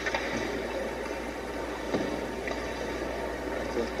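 Steady background noise with a low hum in a TV production truck's control room, during a pause in the hockey play-by-play on the monitor speakers.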